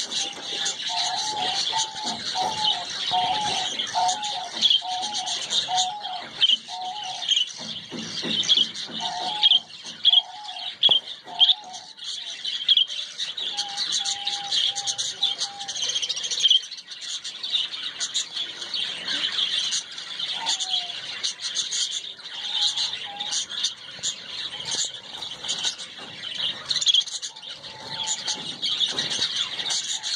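Small aviary birds, budgerigars among them, chirping and chattering continuously in quick, high notes. A lower call repeats at about two notes a second through the first dozen seconds, then comes back only in short snatches.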